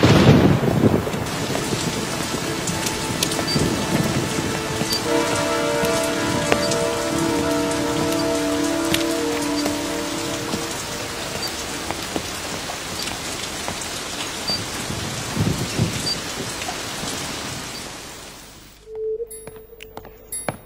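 Heavy rain pouring steadily, with a low thunder rumble at the very start and another about three-quarters of the way through. The rain fades out just before the end.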